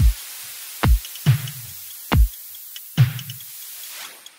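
Electronic dance track playing back, with a kick drum whose pitch falls quickly and short bass hits in an uneven beat. Over them runs a white-noise riser from a synth, shaped by a comb filter and band-pass filter.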